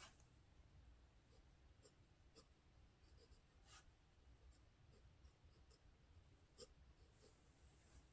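Faint scratching of a pen tip on notebook paper while Chinese characters are written, in short separate strokes, over a faint low background rumble.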